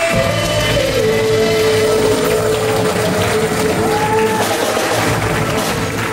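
Live worship band playing and singing: voices with acoustic guitar, cello and keyboard. A long note is held through the middle, with a higher note joining it briefly near the end.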